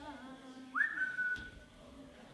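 A single high whistled note: it slides up quickly about three-quarters of a second in, then is held steady for about a second.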